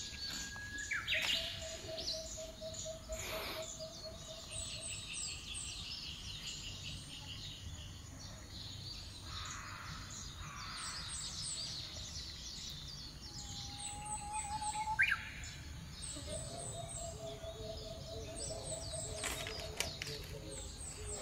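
Forest birds calling: a low, evenly pulsed trill twice, a higher trill between them, and scattered short chirps and rising calls, over a faint steady low rumble.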